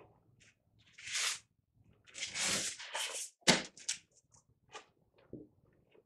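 A sheet of watercolour paper being picked up and moved over matboard by hand: a few soft rustling swishes, then a sharp tap about three and a half seconds in, followed by several lighter ticks.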